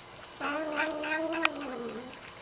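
Black cat drinking water from a dish and making a long, drawn-out moaning call as she drinks, her habitual noise while drinking. The call starts about half a second in, holds steady with a quick regular flutter through it, and dips in pitch as it fades near the end.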